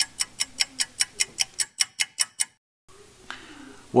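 Clock-ticking sound effect, a quick steady run of about five ticks a second, marking thinking time after a quiz question. It cuts off suddenly about two and a half seconds in, leaving faint room tone with a single small click.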